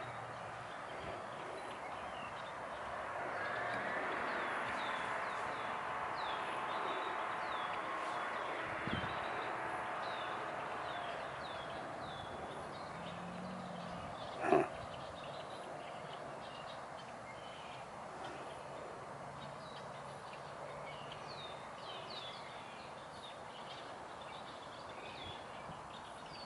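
Wetland ambience: small birds give short, high, down-slurred chirps over and over against a steady hiss. One brief, sharp, louder sound comes about halfway through.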